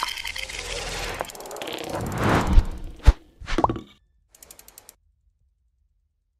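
Sound effects of an animated logo sting: a noisy whoosh swells for about two and a half seconds and ends in one sharp hit about three seconds in. A short rising tone follows, then a quick run of faint ticks.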